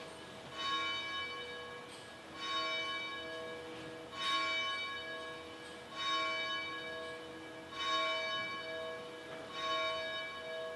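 A church bell tolling slowly, one stroke about every two seconds, six strokes in all, each ringing on and fading before the next. It is a memorial toll during a minute of silence.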